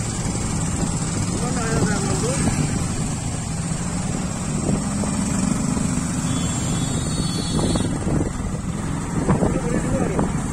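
Motorcycle engine running steadily with road noise, heard from on the bike as it rides slowly through traffic. Brief voices come through about two seconds in and again near the end.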